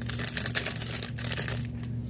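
Plastic hard-candy bag crinkling as it is handled and turned over in the hands.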